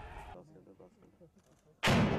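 A single loud explosive blast near the end, hitting suddenly and dying away in a long, echoing rumble.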